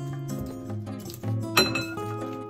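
Background music with steady melodic notes; about one and a half seconds in, a single sharp clink of a spoon striking a dish.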